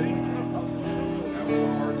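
Electric guitar playing held, ringing chords, moving to a new chord about one and a half seconds in, with people talking over it.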